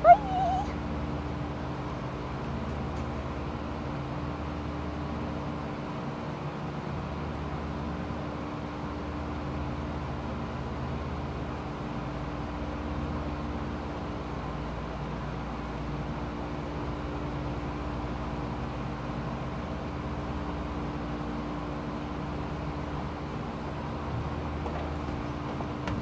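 Steady low background hum with a few faint held tones and no distinct events, after a brief high child's vocal squeak right at the start.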